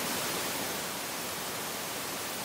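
Steady static hiss, an even rush of noise from low to high pitch, laid in as a transition effect in an edited intro.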